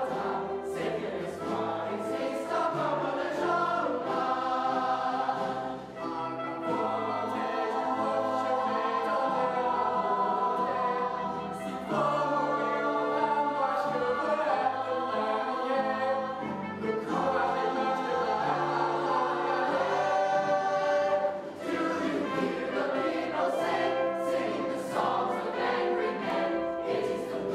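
Large cast of young voices singing a musical-theatre ensemble number in chorus, with instrumental accompaniment. Brief pauses between phrases come about six, twelve and twenty-one seconds in.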